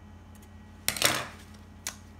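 Scissors snipping through stretch fabric once, about a second in, then a sharp click near the end as the scissors are laid down on the countertop, over a faint steady hum.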